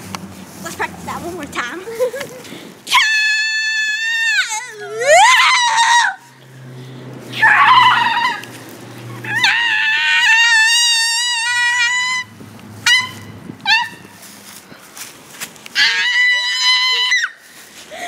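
A girl singing very high, wordless held notes in a mock-operatic style: about five long notes with pauses between them, one swooping up from low and one wavering, the last near the end.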